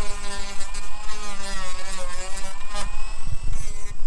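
A small handheld power tool running steadily, its motor pitch wavering slightly as the load changes.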